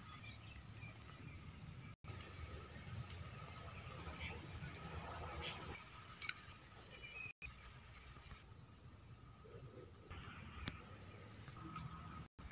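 Faint background noise with a low rumble, a faint steady high tone and a few small clicks, typical of a phone camera being carried and handled. The pickup's engine is not running.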